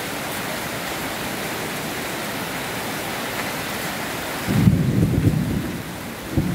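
Heavy tropical rain falling on a flooded yard and road, a steady hiss. Near the end a louder low rumble breaks in for about a second and a half.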